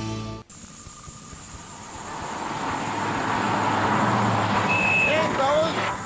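Music cuts off suddenly, then a vehicle's engine and road noise grow steadily louder as it approaches. Near the end a short high beep sounds and a voice begins.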